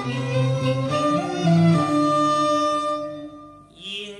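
Cantonese opera accompaniment: bowed string instruments play an instrumental passage between sung lines, with sliding notes. The music dies away briefly near the end.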